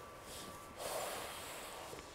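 A person's breathing, faint: a short breath, then a longer one beginning just under a second in.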